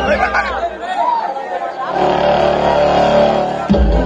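Speech with music: voices in the first half, then a held musical chord for nearly two seconds, broken off near the end by a sudden low thump.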